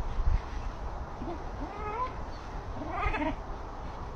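A pet dog whining in three short, pitch-gliding cries while it jumps up at an overhanging branch.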